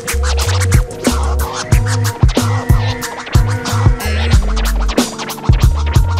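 Hip hop instrumental beat with deep bass and regular drum hits, with a DJ scratching a record on a turntable over it.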